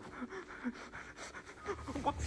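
A person's rapid, heavy breathing: short panting breaths, about three or four a second, faint.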